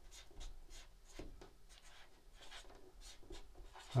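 Dry-erase marker writing on a whiteboard: a run of faint, short strokes as letters are written out.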